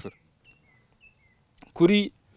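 A bird chirping faintly: several short, high chirps that fall in pitch, spread through a pause in a man's speech.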